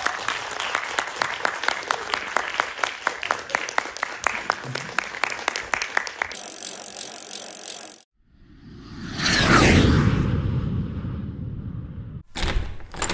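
Audience applauding, many separate hand claps, which stop about six seconds in. After a short break comes a loud swelling whoosh with falling tones.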